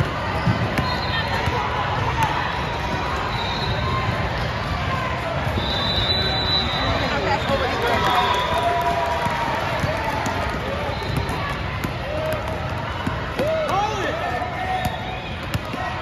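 Basketball dribbled on a hardwood court, heard as short bounces over the steady chatter of a big hall full of people.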